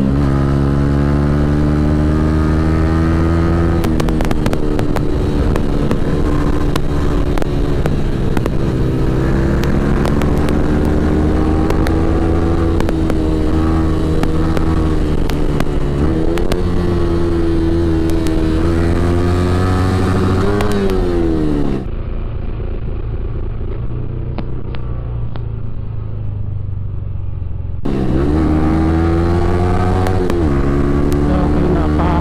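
Yamaha R15's 155 cc single-cylinder engine heard from the rider's seat while riding, its pitch rising and falling with the throttle and gear changes, over wind rush. About three-quarters of the way through the revs climb, then drop away, and for several seconds the sound is duller and quieter before the engine note returns.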